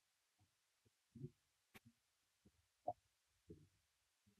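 Near silence: room tone with a few faint, short low thuds and one sharp click just under two seconds in.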